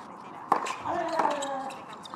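Tennis racket striking the ball on a serve, a sharp pop about half a second in, followed by a fainter hit a little later as the ball is returned from the far end of the court.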